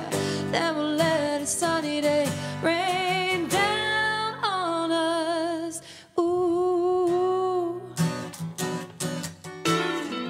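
A female voice singing long held notes with vibrato over acoustic guitar; the singing stops about eight seconds in, leaving strummed guitar.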